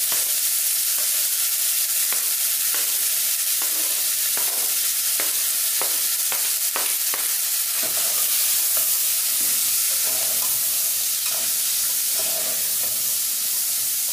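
Chopped collard green stalks frying in the hot oil left from bacon and calabresa sausage: a steady sizzle, with a run of light clicks and knocks from the utensils in the first half as the stalks go in and are stirred.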